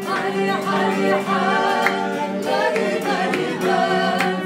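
Live violin playing, with a group of people singing along in unison.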